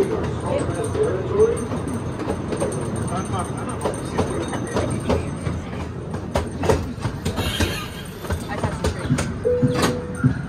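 Small boardwalk tourist train running along its track: a steady rumble with irregular clicks and knocks from the running gear, and a brief steady tone near the end.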